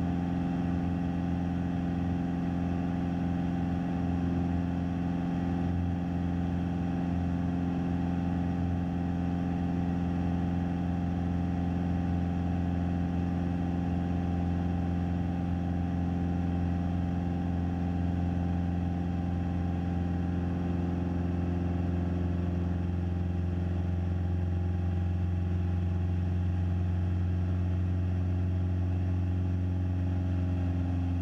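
Cessna 172SP's four-cylinder Lycoming IO-360 engine and propeller running steadily at cruise power, a constant droning hum heard inside the cockpit with airflow noise over it.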